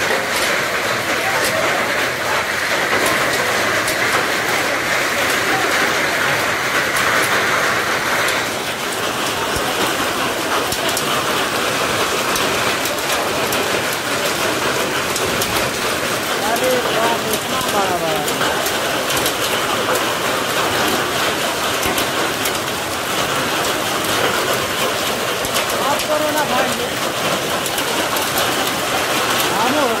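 A hailstorm: hailstones falling hard and striking the ground, bricks and surfaces. They make a dense, steady hiss full of sharp ticks from individual stones hitting.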